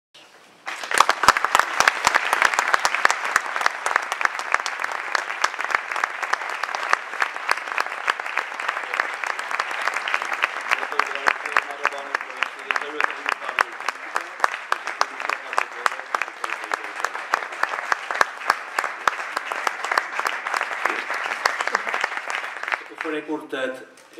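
Audience applauding: dense, steady clapping that starts about a second in and keeps going without a break.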